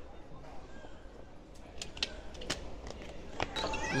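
Low background hum of an airport terminal hall, with a few short sharp clicks and taps scattered through it.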